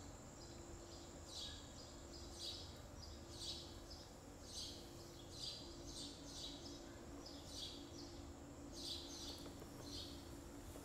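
Faint night-jungle ambience from the theatre's sound design: a steady high insect drone with short falling chirps repeating about once a second, some in quick pairs, over a low steady hum.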